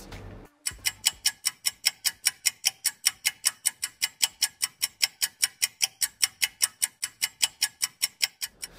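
Ticking-clock sound effect counting down thinking time for a quiz question: fast, even ticks at about four to five a second, starting about half a second in.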